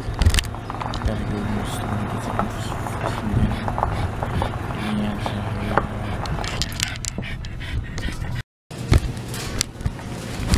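Car engine running, heard from inside the cabin as a steady low hum, with knocks from a handheld camera being moved. The sound drops out briefly near the end where the picture cuts.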